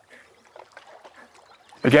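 Faint, scattered water splashes from a hooked cutthroat trout thrashing at the surface in the shallows near a landing net.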